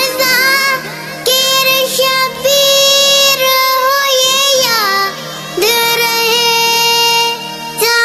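Music: a single high voice sings a devotional lament in long held notes that slide between pitches, over a steady low held tone. The sung phrases break briefly about a second in and again about five seconds in.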